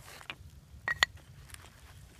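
Wooden bow-drill spindle and fireboard knocking together as they are laid down: two quick clacks about a second in, with a few fainter taps and rustles around them.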